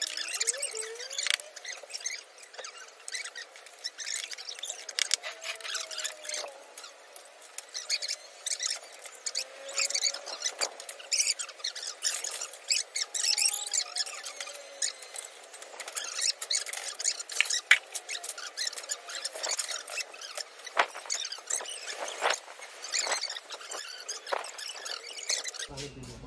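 Fast-forwarded sound of people assembling a metal swing frame: high, chipmunk-pitched voices and a quick run of clinks and knocks from the metal parts.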